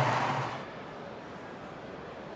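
A stadium crowd's cheering fades out in the first half second, leaving a low, steady wash of crowd noise.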